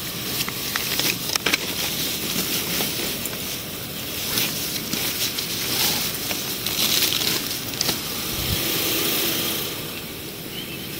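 Plastic bags rustling and crinkling as they are handled, with scattered small clicks and knocks of loose items being moved about.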